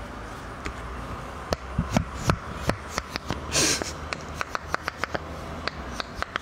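Silicone pop-it fidget toy pressed close to a microphone: a run of irregular short pops, few at first and coming faster after about a second and a half, with a short breathy rush about halfway through.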